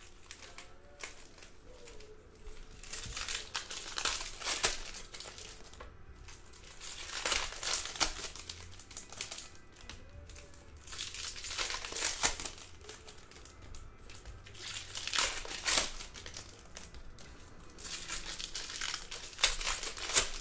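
Foil wrappers of Topps Chrome baseball card packs crinkling as the packs are torn open and handled, in repeated bursts every few seconds.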